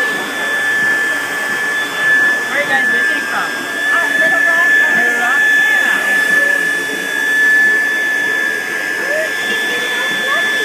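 Build-A-Bear stuffing machine's blower running, a steady rush of air with a constant high whine, as fluff is blown through the nozzle to stuff a plush bunny.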